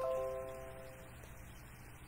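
A single chord of several ringing tones sounded at once, fading out over about a second.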